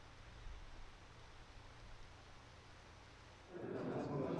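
Faint outdoor ambience with a low rumble and soft hiss. Near the end it cuts abruptly to a busy indoor hall: a murmur of people's voices and movement.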